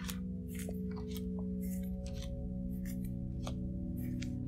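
Playing cards being dealt from the deck and laid onto a tabletop: several short papery swishes and snaps, a few every second, over soft background music holding long steady tones.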